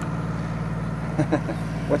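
A steady low background hum, with a short laugh near the end.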